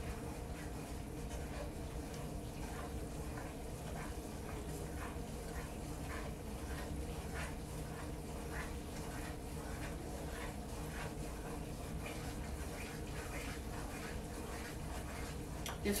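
Wooden spoon stirring a thick butter-and-flour roux in a skillet, soft scraping strokes against the pan at about two to three a second, over a steady low hum.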